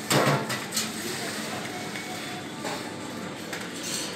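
Supermarket background ambience: a steady low hum of a large shop with faint distant voices, and a brief clatter in the first second.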